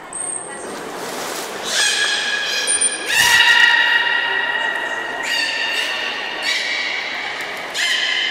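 Beluga whale calling in air: about five long, high, steady calls in a row, each starting sharply and held for a second or more, the second the loudest. Two very short, very high peeps come before the calls.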